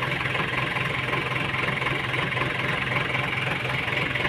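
JCB 3DX Super backhoe loader's diesel engine idling steadily, an even low hum with no knocks or changes.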